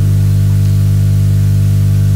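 Loud, steady electrical mains hum: a low, even buzz with several evenly spaced overtones above it, unchanging throughout.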